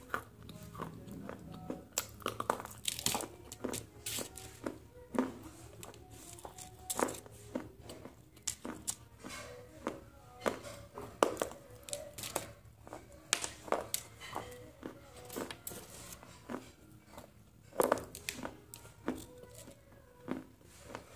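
Close-miked crunching bites and chewing of a crisp food, a sharp crunch every second or so, over quiet background music.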